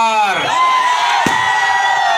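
A man's voice shouting long, drawn-out slogan calls through a public-address system, with crowd voices and cheering behind, and a single sharp click about a second in.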